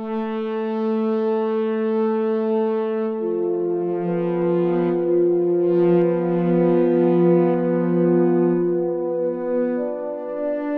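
Yamaha SY77 FM synthesizer playing a soft, analog-style pad patch: a single held note, joined by lower notes about three seconds in to form a sustained chord, which changes just before the end.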